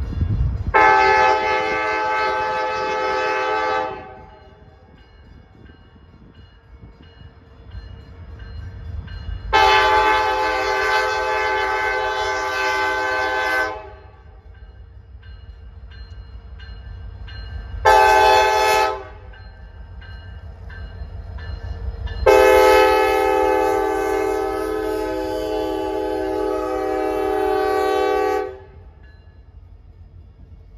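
Diesel freight locomotive's air horn blowing the grade-crossing signal: long, long, short, long. Under the horn the locomotives' engines rumble low, growing louder as the train closes in.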